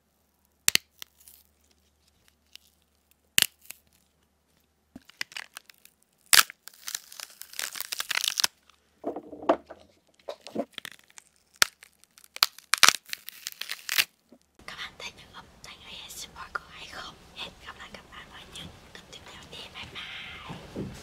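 Celery stalks snapped and pulled apart close to a microphone. Sharp single cracks come every few seconds, with stringy tearing between some of them. A denser, steady rustling and crunching fills the last five seconds.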